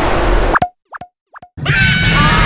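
Cartoon sound effect: three quick rising 'bloop' plops about 0.4 s apart in silence, after a rushing noise that cuts off about half a second in. Near the end the next scene comes in with noise and music.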